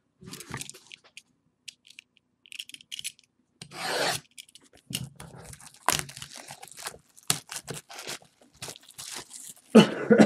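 Plastic shrink-wrap crinkling and tearing as it is peeled off a sealed cardboard trading-card box. The sound is irregular crackles and sharp rips, with a longer tear about four seconds in.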